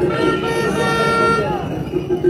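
A horn sounding in a crowd: one held tone lasting about a second and a half, over crowd voices.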